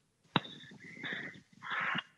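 A man's wordless hesitation sounds before answering a question: a sharp click, then a thin whine-like tone, then a breathy rush near the end.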